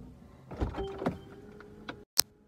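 A man's long, drawn-out yawn, voiced on one steady pitch for about the last second, after a few soft thumps and rustles of movement.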